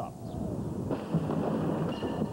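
Bomb squad's controlled detonation of a suspected explosive device in an ammunition box: a blast with a low rumble that carries on.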